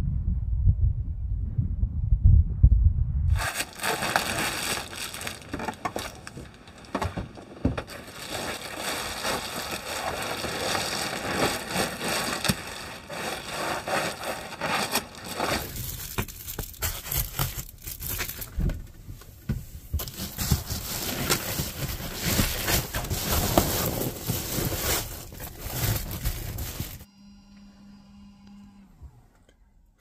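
A low rumble for the first three seconds, then foil bubble-wrap insulation crinkling, crackling and scraping as it is unrolled and pressed against the camper walls, stopping shortly before the end.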